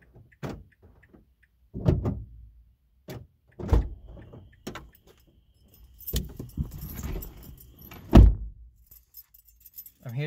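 Keys jangling, knocks and clicks as a car's driver door is unlocked and opened and someone climbs into the seat, then the door shutting with a thump a little after eight seconds in.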